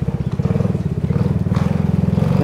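A vehicle engine idling, a steady low pulsing throb.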